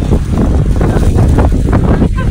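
Wind buffeting the phone's microphone, a loud, steady low rumble.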